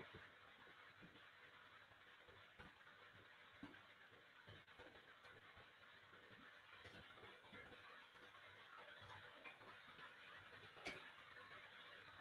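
Near silence: faint steady hiss of an open call microphone, with a few soft clicks and one sharper click about eleven seconds in.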